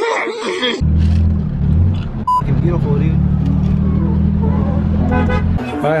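Steady low engine drone heard inside the cabin of a 2003 Ford Mustang V6, starting about a second in after a short burst of cartoon voice audio. A brief high beep sounds a little after two seconds in.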